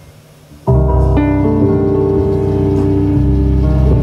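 Live blues band of organ, electric bass and drums: after a quiet lull, the full band comes back in loud less than a second in, with held organ chords over bass and drums.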